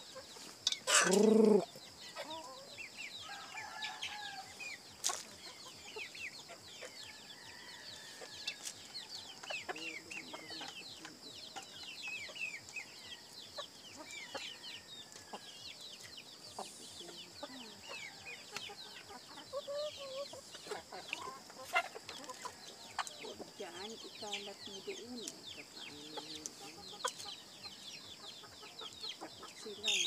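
A flock of chickens clucking and peeping as they peck at scattered grain, with many short high chirps throughout and one louder call about a second in.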